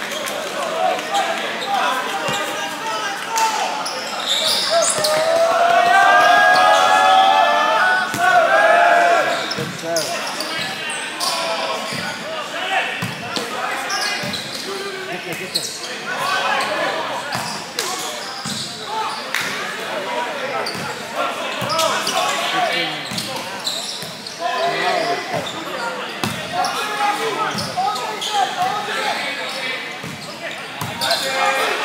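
Echoing gym sounds of a volleyball game: the ball being struck and bouncing on the court in short knocks, with players and spectators shouting and talking. A loud burst of several voices shouting together comes about five seconds in.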